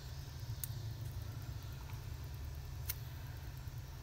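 Steady low rumble with two sharp little clicks about two seconds apart, from washi tape and paper being handled on a craft table.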